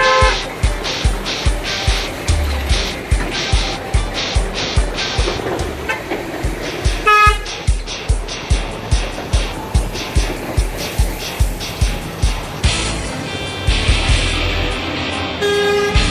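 Truck horns tooting briefly three times, near the start, about halfway through and near the end, over music with a steady beat.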